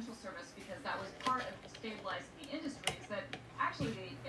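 A Comfort Zone 8-inch high-velocity fan being switched on: a sharp click about three seconds in, then the fan motor starts with a low steady hum.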